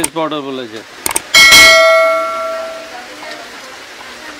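A quick click, then a bright bell ding that rings out over about a second and a half: the sound effect of a subscribe-button animation.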